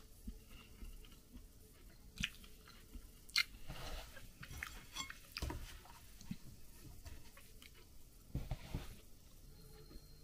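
A person chewing food quietly, with soft mouth sounds and a few short, light clicks scattered through.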